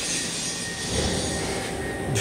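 Robinair CoolTech 34788 refrigerant recovery machine running with a steady hum and hiss, and a low rumble coming in about a second in.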